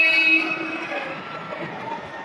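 A man's voice holds one long, steady note through a microphone and stops about half a second in. A low background murmur follows.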